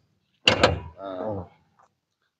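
The driver's door of a 1986 Toyota Starlet swung shut with a single sharp slam about half a second in.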